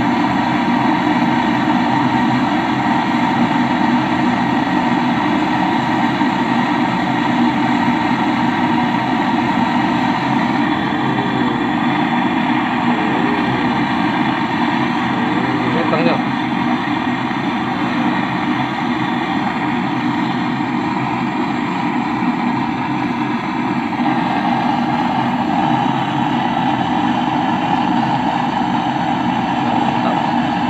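Gas-canister torch flame hissing steadily as it heats the copper pipe on a freezer compressor to braze on a charging valve. There is one brief click about halfway through.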